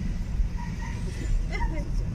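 Steady low rumble of a car driving slowly, heard from inside the cabin.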